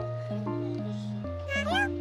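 Light, bouncy background music with a steady bass line. About a second and a half in, a short, high, sliding meow-like sound effect rises over the music.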